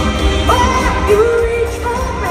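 A woman singing a ballad live with orchestral backing, her melody gliding between pitches and holding one note for about half a second in the middle, heard in a large arena through a phone in the audience, with a deep low rumble underneath.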